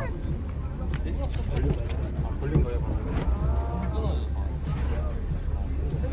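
Low, steady rumble of a boat on the water, with faint voices talking over it.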